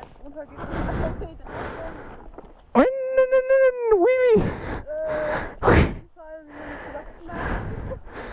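A person's high-pitched, drawn-out vocal exclamation lasting about a second and a half, starting near the middle, between breathy noises and short voice fragments.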